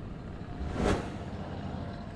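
A broadcast news transition whoosh that swells and fades once, a little under a second in, over a low, steady background hiss.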